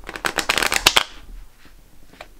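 A deck of tarot cards being riffle-shuffled: a fast, dense run of card flicks lasting about a second, then a few faint taps as the halves are pushed together.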